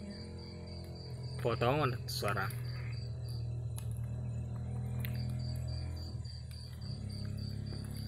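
A cricket chirping, a high, evenly pulsed note at about five chirps a second, with a break of a couple of seconds in the middle.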